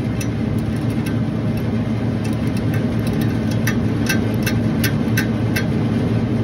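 Ratcheting refrigeration service-valve wrench clicking on a king valve stem, a run of short clicks about two or three a second starting about two seconds in. Refrigeration machinery runs with a steady low hum underneath.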